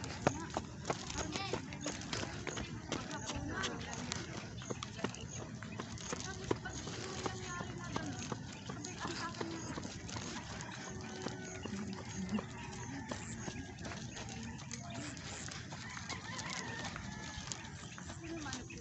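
Outdoor sounds during a walk: short knocks that fit footsteps on pavement, over a steady noisy background with faint voices and occasional animal calls.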